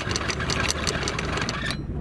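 Electric anchor windlass, newly rebuilt with a new motor and gearbox, running under power with a steady hum and a rapid, even clicking as the chain gypsy turns; it stops near the end.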